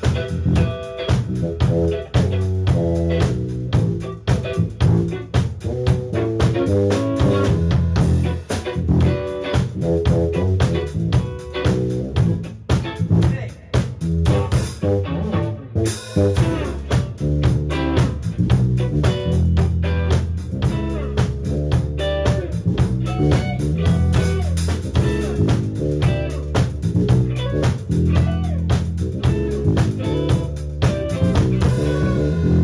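A small band playing a funk groove live: electric guitar and bass over a drum kit. The drums drop out for about two seconds past the middle and then come back in.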